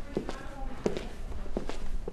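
Footsteps walking at an even pace, a step about every three quarters of a second.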